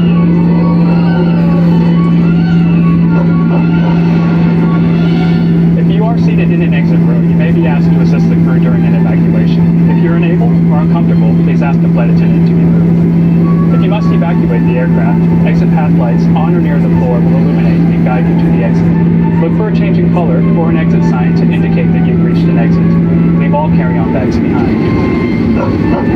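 Cabin noise of a Boeing 737-900ER taxiing: a loud steady hum over a low engine rumble, which stops about two seconds before the end, with faint voices in the cabin.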